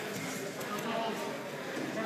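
Indistinct background chatter of spectators and coaches in a large hall, with no clear nearby voice.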